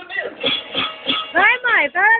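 People's voices calling out, ending in a loud drawn-out call that rises and falls in pitch, with music playing underneath.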